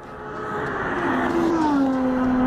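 Aston Martin One-77's 7.3-litre V12 engine as the car drives past, growing louder as it approaches, its pitch dropping as it goes by about one and a half seconds in.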